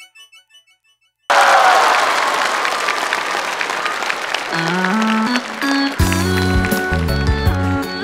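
A short electronic jingle echoes away, then after a moment of silence a theatre audience bursts into applause. Under the clapping a live band starts with a few rising bass notes and is playing fully about six seconds in.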